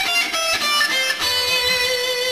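Electric guitar playing a six-note half-step sequence that starts at the 15th fret: a quick run of single notes, then settling on one held, ringing note about halfway through.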